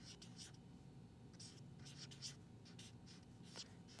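Felt-tip marker writing on paper: a string of faint, short scratching strokes.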